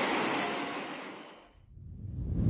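Audience applauding in a large hall, a steady wash of clapping that fades out about a second and a half in.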